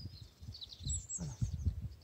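Small birds chirping in short falling notes, with wind rumbling on the microphone.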